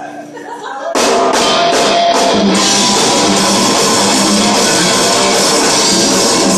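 Melodic death metal band playing live with distorted electric guitars and drum kit. After a quieter first second, the full band comes in loudly about a second in with four heavy accented hits, then keeps going at full volume.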